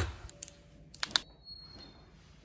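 A rustle of movement fading out, then a few light, sharp clicks: two or three close together about a second in.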